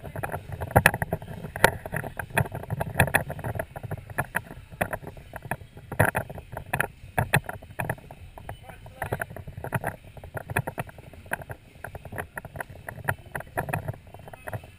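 Irregular knocks and bumps close to the microphone, the handling noise of a GoPro on a suction-cup mount being taken down and carried, over a low rumble of background voices.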